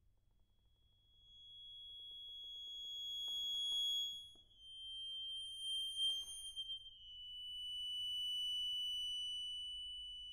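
Accordion sustaining very high, piercing notes that swell in about a second in and fade between them, each note a little lower than the last (three in all), with brief breathy noise at about three and a half and six seconds in.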